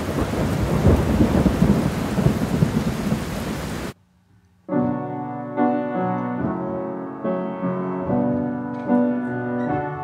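Sound of heavy rain with thunder rumbling, which cuts off abruptly about four seconds in. After a short silence, a piano begins playing the song's opening chords.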